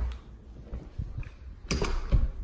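Footsteps on a hardwood floor: low thumps about a second in, followed near the end by a short cluster of sharp mechanical clicks.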